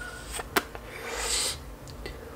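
A person drawing on a lit hemp-wrap blunt: a sharp lip click about half a second in, then an airy breath hiss of smoke about a second in.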